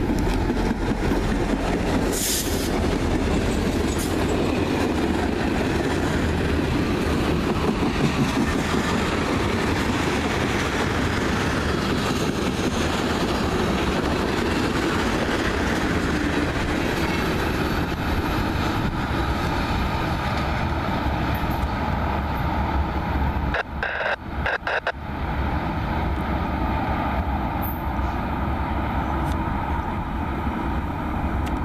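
Norfolk Southern freight train passing close by: its diesel locomotives, then tank cars, roll steadily along the rails in a loud, continuous rumble. The sound breaks off briefly about three-quarters of the way through, then carries on.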